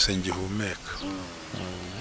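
A man's voice speaking softly and slowly, in two drawn-out, held syllables.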